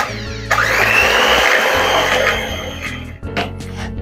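Electric hand mixer running, its beaters whisking raw eggs in a bowl. It starts abruptly about half a second in and fades out after about three seconds, with background music underneath.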